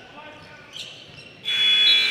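Gym's end-of-period buzzer sounding about one and a half seconds in, a steady high electronic tone, as the game clock runs out to end the first half.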